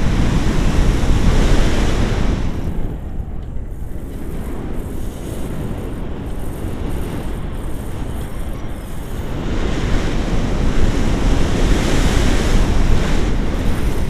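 Airflow buffeting the microphone of a paraglider in flight: a loud, steady rushing noise heaviest in the low end, swelling in the first couple of seconds and again near the end.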